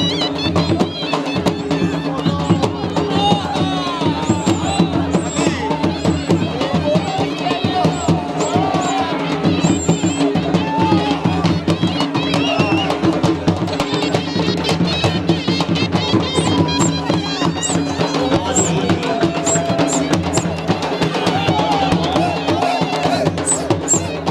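Loud Punjabi folk music with fast, continuous drumming and voices mixed in.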